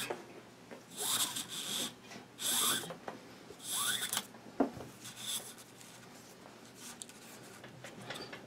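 Nylon paracord being drawn through a weave wrapped on a rifle's underfolder stock arm, rasping as it slides. About four quick pulls come in the first half, then quieter handling of the cord.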